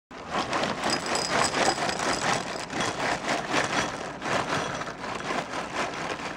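Dry ring cereal pouring from a plastic bag into a ceramic bowl: a continuous dense rattle of many small pieces hitting the bowl and each other.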